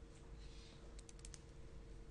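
Near silence with faint steady room hum, broken about a second in by a quick run of about five light clicks, like keys or a mouse being pressed.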